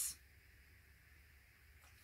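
Near silence: faint, steady room hiss in a pause between words.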